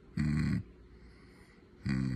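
A person humming with the mouth closed. One rough, gravelly hum lasts about half a second near the start, then after a pause a short 'mm' hum begins near the end.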